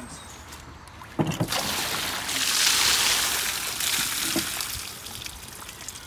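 Water poured from a plastic bucket splashing onto a corrugated shed roof: a knock about a second in, then a rush of splashing that is loudest in the middle and dies down to a trickle near the end.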